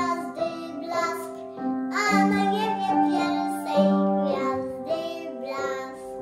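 A young boy singing a Polish Christmas carol with upright piano accompaniment. His voice stops near the end, leaving the piano playing on alone.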